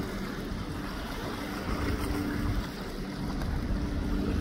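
Wind rushing over the microphone beside a choppy, whitecapped sea, with a faint steady low hum underneath.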